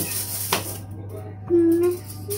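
Foil wrapper of a chocolate bar crinkling and crackling as it is peeled open, with a few small clicks. Near the end a child's voice holds one short note, the loudest sound.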